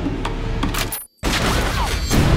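Trailer soundtrack: dramatic music under a run of sharp percussive hits, cut off abruptly to silence about a second in, then starting up again at full level.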